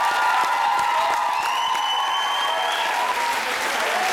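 School audience applauding and cheering steadily in a large hall, with a high, steady whistle lasting just over a second about halfway through.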